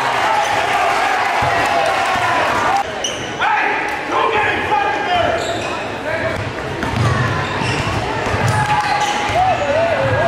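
Basketball dribbled on a hardwood gym floor, with sneakers squeaking and voices from players and crowd echoing in a large gym.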